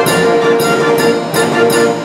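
A 52-key Verbeeck/Verdonk Dutch street organ, fitted with an added set of trombones, playing a tune. A held note sounds over a regular beat of about two strokes a second from its percussion.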